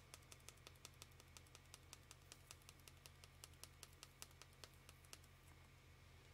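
Faint, rapid light clicks, about six a second, from a small glitter jar being tapped to sprinkle glitter onto a glue-coated tumbler; they stop about five seconds in.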